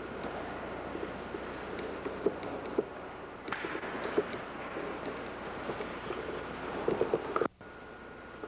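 Steady background noise of a large church interior, with scattered light knocks and clicks. Near the end the sound cuts out abruptly for a moment and comes back quieter, as at a recording cut.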